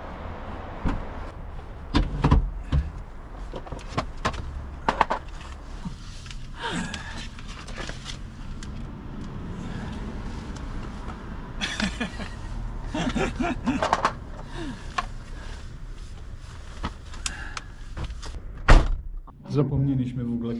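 A Chevrolet hatchback's doors being opened and shut, with scattered knocks and clunks as things are taken out of the car, and a few brief snatches of voices.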